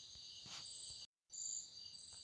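Faint, steady high-pitched insect chirring, crickets by its kind, in the background, cut by a brief dropout to silence just after a second in.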